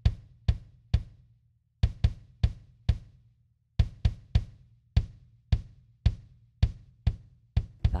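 Sampled acoustic drum kit from the BFD3 virtual drum software playing: a run of sharp kick and snare hits at about two a second, broken by two short pauses. The kick's bleed into the snare microphone is switched off.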